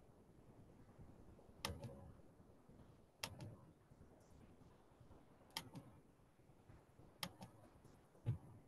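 Near silence with four separate sharp clicks, irregularly spaced about one and a half to two and a half seconds apart: clicking on a computer as a meeting host works the screen.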